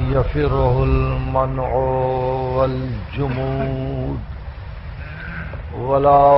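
A man chanting a religious recitation, his voice held in long, wavering, melismatic notes over several phrases, with a pause about two-thirds of the way through. It is heard on an old tape recording with a narrow, muffled frequency range.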